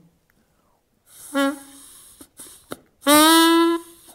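A plastic drinking straw blown as a reed pipe: a short, breathy first note about a second in, then a longer, loud, steady note near the end.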